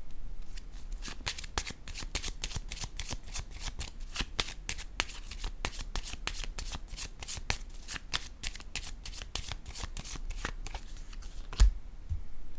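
A deck of oracle cards being shuffled by hand: a quick, continuous run of soft clicks as the cards slip against each other. A single louder knock comes near the end.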